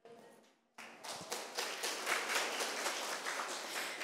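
An audience clapping: the clapping begins abruptly about a second in and keeps up as a steady patter of many quick claps.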